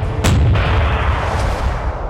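A heavy naval gun firing once, about a quarter second in. Its boom rolls on in a long low rumble that slowly fades away.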